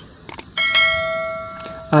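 Subscribe-button bell sound effect: a couple of quick clicks, then a single bell ding that rings on and fades away over about a second and a half.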